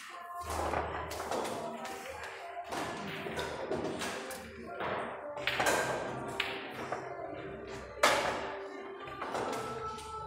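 Pool balls clicking and knocking together as balls are gathered into the triangle rack, with sharp cracks from shots at other tables, the loudest about eight seconds in. Background music plays underneath.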